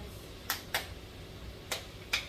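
Tortilla masa being patted by hand between the palms: three short sharp slaps, two in quick succession about half a second in and one more near the end.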